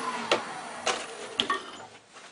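Wood lathe coasting down after being switched off from high speed, its whine falling in pitch and fading over about a second. Four sharp clicks and knocks from turning tools being handled come through it.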